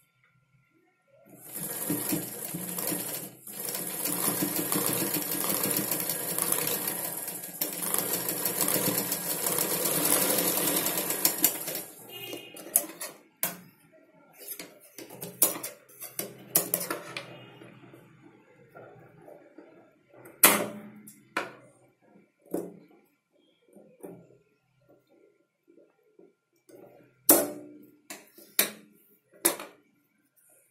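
Black domestic sewing machine running steadily for about ten seconds as it stitches fabric, with one brief pause, then stopping. After it stops come scattered clicks and knocks as the fabric and machine are handled.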